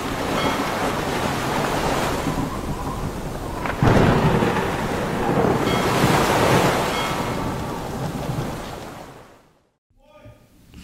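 Thunderstorm: steady rain with rumbling thunder, a sudden loud thunderclap about four seconds in, fading out near the end.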